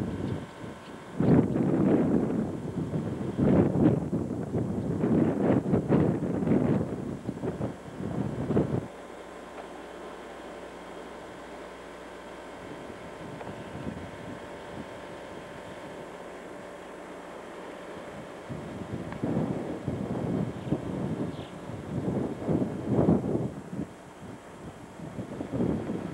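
Wind buffeting a camcorder microphone in irregular gusts, easing to a steady low hiss for about ten seconds in the middle before the gusts return.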